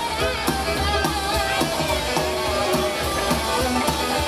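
A rock and roll band playing live, with drum kit, upright double bass and electric guitar under female singing voices.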